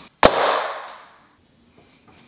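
A single sharp, loud bang about a quarter second in, with a long echoing tail that fades away over about a second.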